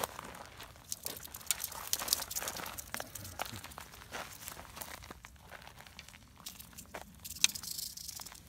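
Dry desert brush and gritty ground crunching and crackling in an irregular run of small clicks as it is walked over and prodded with snake tongs, with one sharper click near the end. No rattling is heard.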